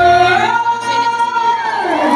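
A woman singing live into a microphone over a sound system, holding one long note; the low backing drops away at the start and the note steps up slightly about half a second in.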